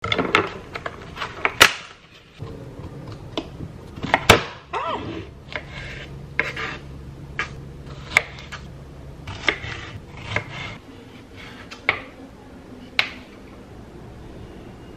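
A small kitchen knife knocking and scraping on a wooden cutting board as strawberries are hulled, in irregular sharp knocks roughly once a second.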